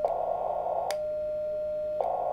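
uSDX transceiver's CW sidetone, a steady single tone of about 600 Hz, sounding while the rig is keyed and transmitting about one watt. The tone breaks off right at the start and comes back with a click about a second in, over a steady hiss.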